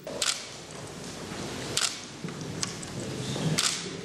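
Ambient sound of a large hall with four short, sharp clicks spread through it, typical of press cameras' shutters firing at an official signing.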